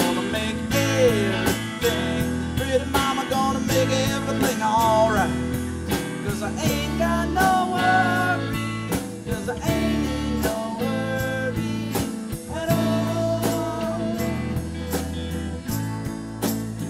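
A live rock band plays an instrumental passage: guitars, bass, drums and keyboard keep a steady beat under a lead melody line that bends in pitch.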